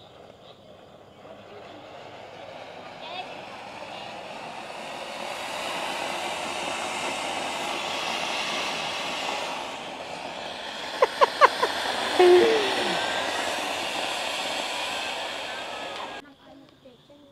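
Ground fountain fireworks (table-top 'mesa poothiri' fountains) spraying sparks with a steady hiss that builds over the first several seconds. A quick run of four or five sharp pops comes about eleven seconds in, followed by a brief voice.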